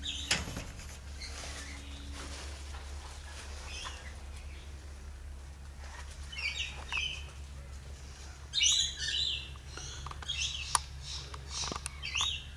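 Birds chirping: short, high chirps in small clusters that come more often in the second half, over a steady low hum. There is a brief knock just after the start.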